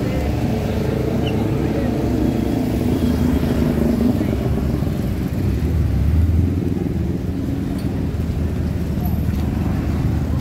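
Busy city street: steady traffic noise of car and motorcycle engines, with a low engine rumble that swells about six seconds in, and voices of passers-by.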